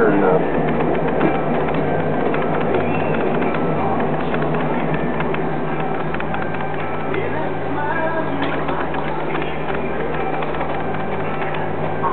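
A potter's wheel running steadily with a constant low hum while a large lump of wet clay is centered on it by hand. Music plays in the background.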